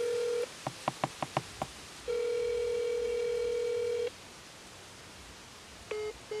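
Call tone from a mobile phone's speaker: a steady buzzing tone of about two seconds, then a quick run of short clicks, then the same tone again. The call is not going through.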